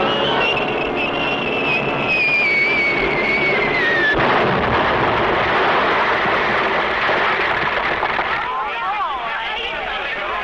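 A cartoon falling-bomb whistle glides slowly down in pitch for about four seconds, then breaks into a long explosion rumble. Near the end, crowd voices come in.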